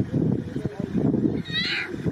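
Young lion cub giving a single high, mewing call near the end, over low background voices.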